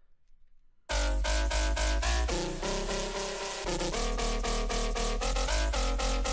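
Drum and bass synth bass line from a Serum patch, playing back from the piano roll about a second in. It has a heavy sub under stacked pitched notes that step between pitches as the pattern moves.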